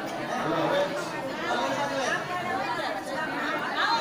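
Several people talking at once: overlapping chatter of a small group, with no single voice standing out.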